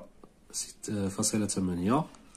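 A man's voice speaking, reading out a number, after a brief quieter moment with a few faint ticks of a ballpoint pen on paper.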